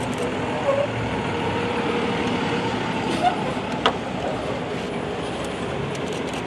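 Motorcade of large passenger vans and an ambulance driving past on the street: steady engine and tyre noise, with voices in the background. A brief sharp click about four seconds in.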